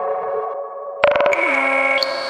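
Synthesizer music: a sustained electronic chord, broken about a second in by a quick run of clicking pulses, then a new held chord with a short falling tone.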